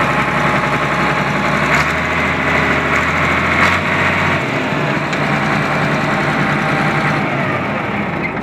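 Case 1150 crawler dozer's engine running steadily at idle, its low hum shifting about halfway through.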